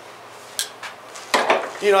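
A few light metallic clinks as steel engine parts on the workbench are handled, during a quiet pause.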